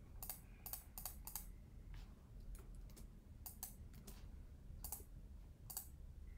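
Faint, irregular clicking of a computer keyboard and mouse being operated: about a dozen short clicks, some in quick pairs, over a low background hum.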